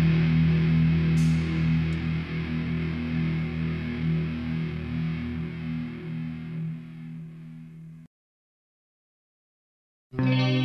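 Electric guitar chord from a hardcore punk band recording, left ringing at the end of a song and slowly fading over about eight seconds. It then cuts off to complete silence for the last two seconds.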